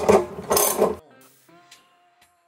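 Hand socket ratchet clicking rapidly as it tightens a bolt, cutting off abruptly about a second in. Soft background music follows.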